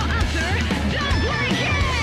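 Heavy rock song playing, with electric guitar, a strong bass end and a prominent synth line that glides in pitch.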